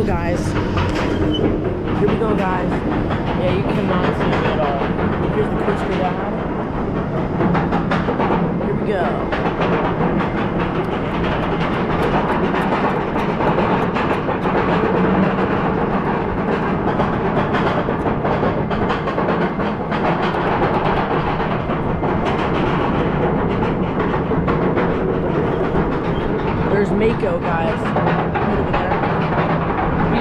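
Roller coaster chain lift hauling the train up the lift hill: a steady, loud mechanical rattle and clatter that lasts throughout.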